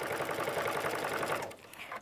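Sewing machine stitching rapidly in free-motion stippling through a quilt sandwich, a fast even run of needle strokes that stops about one and a half seconds in.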